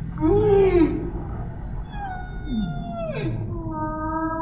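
Humpback whale song. A loud, short moan rises and falls in pitch, then a longer call slides downward and settles into a steady held tone, over a low underwater rumble.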